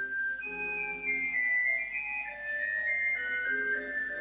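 Background music: a slow melody of held notes, several sounding together, changing pitch every half second or so.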